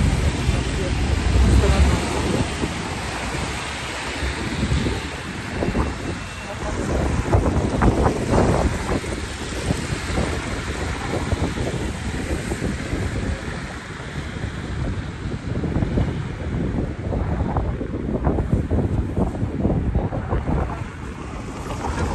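Wind buffeting the phone's microphone, rising and falling unevenly, over the noise of a city street.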